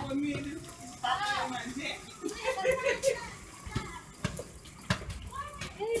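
Children's voices chattering and calling out in a group, with a few sharp knocks in the second half.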